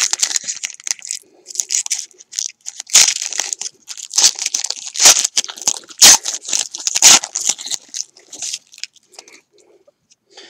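Trading-card pack wrapper crinkling and tearing in the hands, in a run of sharp, irregular crackles that are loudest in the middle and thin out near the end.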